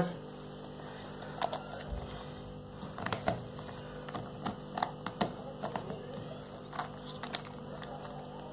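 Plastic aquarium bio balls clicking against a small plastic container as they are dropped in and handled: scattered light clicks over a steady low hum.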